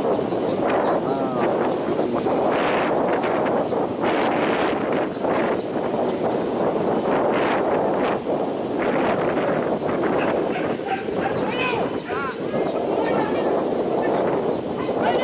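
A pack of hunting dogs barking and yelping together in a continuous din, baying at a wild boar that is holding out in the thicket.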